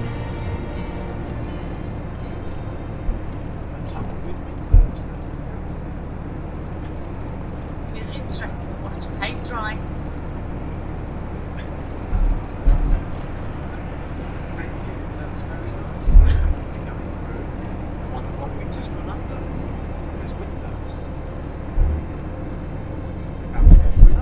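Iveco Daily van driving at motorway speed, heard from inside the cab: a steady low drone of road and engine noise, broken by a few short low thumps.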